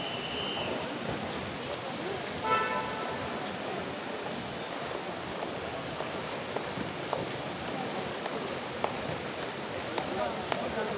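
Steady rushing noise of a landslide as the hillside collapses in a cloud of dust and debris, with the voices of onlookers. A brief pitched note cuts through about two and a half seconds in.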